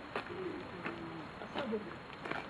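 Low, soft cooing call from a bird, with a few sharp ticks.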